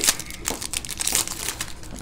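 Foil wrapper of a Prizm basketball trading-card pack crinkling and tearing as it is peeled open by hand, in irregular crackles with a sharper one at the start.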